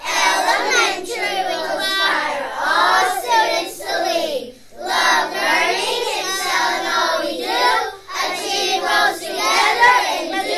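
A group of young schoolchildren chanting a school pledge together in unison, in phrases broken by short pauses about four and a half and eight seconds in.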